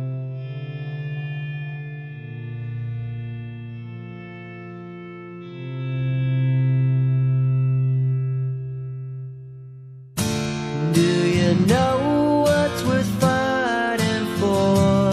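Alternative rock music. Long held, effects-laden guitar chords ring out for about ten seconds, then a louder, strummed guitar part starts suddenly.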